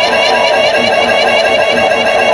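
Loud electronic dance music from a DJ set, played over a club sound system, with a dense, steady texture.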